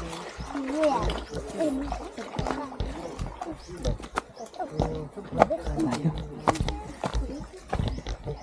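Indistinct voices of several people talking, with scattered sharp clicks and knocks of footsteps and handling close to the microphone, and bursts of low rumble.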